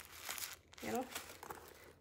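White tissue stuffing paper crinkling and rustling as it is pulled out of a new handbag and crumpled in the hand. This is the packing that keeps the bag's shape.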